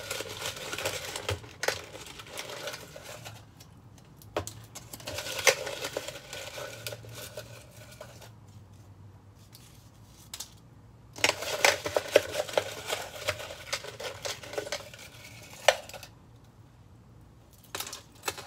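Paper raffle slips being rummaged in a plastic cup and unfolded by hand: rustling and crinkling in three spells with quiet gaps between, with sharp little clicks of the slips and fingers against the cup.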